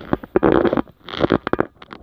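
Tall weeds and brush rustling and crackling as someone pushes through them on foot, in two loud rushes with sharp snaps.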